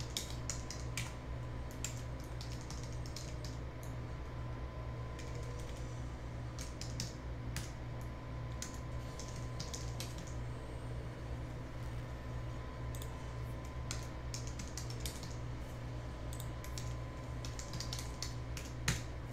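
Irregular bursts of computer keyboard typing, short clicks in quick clusters, over a steady low electrical hum.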